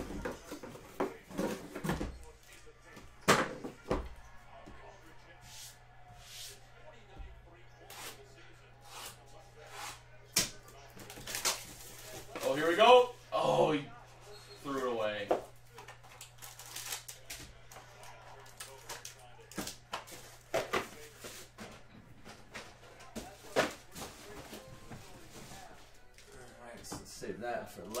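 Cardboard card boxes being handled and unwrapped: scattered knocks, taps and scrapes as boxes are set down and stacked, with crinkling of plastic wrap being pulled off.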